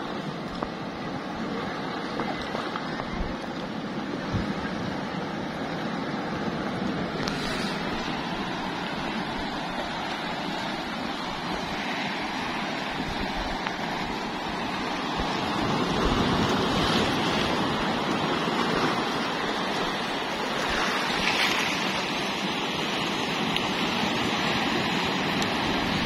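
Strong sea surf breaking and washing in among rocks along the shore: a steady rush of waves that swells louder about two-thirds of the way through.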